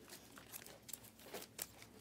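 Faint rustle and a few soft clicks of Panini Prizm trading cards being slid off a stack by hand, the glossy cards rubbing against each other.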